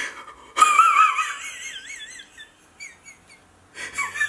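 A man crying with joy in exaggerated, high-pitched wails, his voice wobbling up and down in pitch; the wailing starts loud about half a second in and fades away over the next two seconds.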